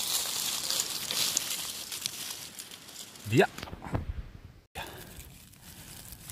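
Dry beech leaf litter rustling and crackling as a hand works through it around a porcino mushroom, with a short shout a little over halfway through.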